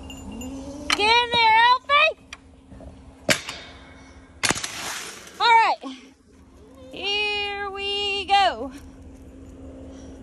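Goats bleating: a few short quavering bleats about a second in, a short falling bleat past the middle, and one long held bleat near the end. A sharp knock and a brief rustle come between the bleats.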